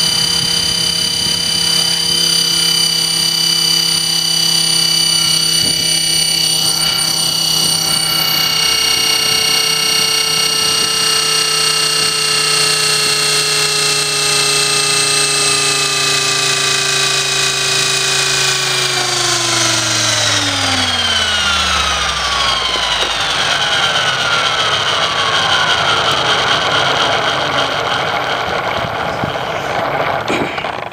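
E-flite Blade 400 electric RC helicopter running with a steady, high motor-and-rotor whine, then spooling down: a little past halfway the whole whine slides down in pitch over several seconds. A whooshing rotor noise with falling streaks stays on as the blades coast down.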